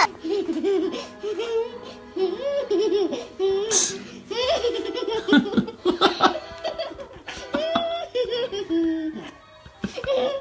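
A small girl giggling and laughing in excited, high bursts through the whole stretch, with a sharp knock about four seconds in.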